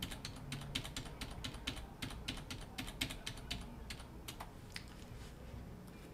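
Computer keys being typed: a faint run of quick, irregular key clicks that thins out about five seconds in.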